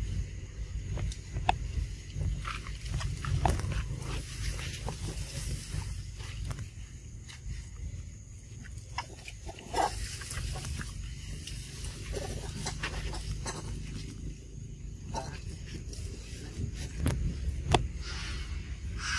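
Macaques calling in short, scattered sounds among clicks and rustles, over a steady low rumble.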